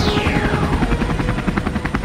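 Fast, even chopping like helicopter rotor blades, about ten beats a second, under a falling tone that fades out in the first second.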